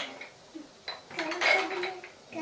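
A metal spoon clinking and scraping against a large dish of couscous, a few separate clinks.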